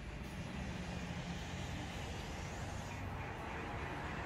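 Road traffic: cars driving past on a wet road, a steady low rumble with tyre noise that grows slightly louder.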